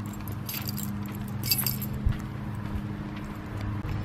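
A steady low mechanical hum, with brief metallic jingling twice and a single knock about two seconds in.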